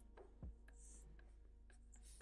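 Faint strokes of a felt-tip permanent marker drawing on paper, with a soft knock about half a second in.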